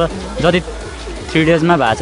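Speech: a person talking, with a short pause about a second in.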